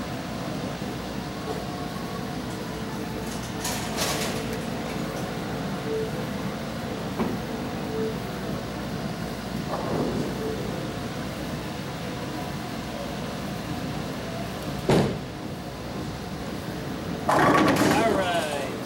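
Tenpin bowling: a ball is rolled down the lane and crashes into the pins, with a sharp crack about three-quarters of the way through and a longer clatter near the end, over the steady hum of the alley's machinery.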